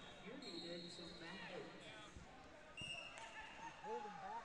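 Overlapping voices of people talking in a gym hall, with a few dull thuds and short, high squeaks mixed in.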